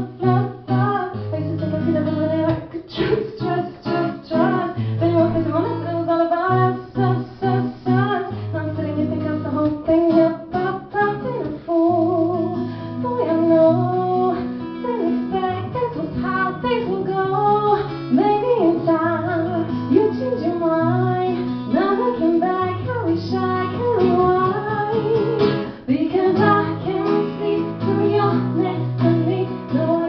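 A woman singing a pop song to acoustic guitar accompaniment, performed live.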